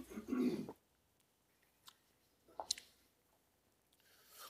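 A man sipping from a paper cup: a short throaty sound at the start as he drinks, then a single light tap about two and a half seconds in as the cup is set down on the table.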